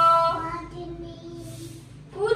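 A small girl singing in a high voice: a loud held note at the start, then softer drawn-out notes that fade away shortly before the end.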